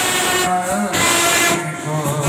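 Indian street brass band of trumpets, trombones and a euphonium playing loud held chords together, the notes bending slightly in pitch.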